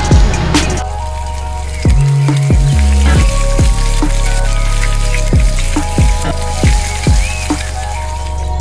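Background music with a deep bass and drum beat, over the sizzling of chicken cooking on a charcoal grill.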